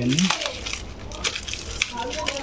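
Plastic bag and honeycomb paper packaging crinkling and crackling in quick irregular bursts as fingers pick at it to open it. A short vocal sound at the very start.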